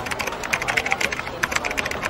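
Computer keyboard typing: a quick run of key clicks that stops just before the end.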